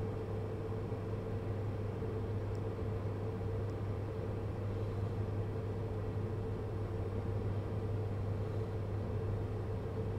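Steady low hum and hiss inside a car's cabin, with a fainter steady tone above the hum.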